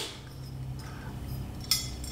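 Small metal carburetor parts being handled on a table, with one brief light clink near the end, over a faint steady room hum.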